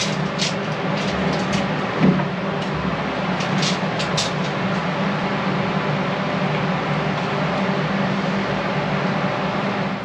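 Electric fan running with a steady whir and low hum in a small enclosed space. A few light clicks and one knock about two seconds in come from hands handling a tape measure and a bilge pump.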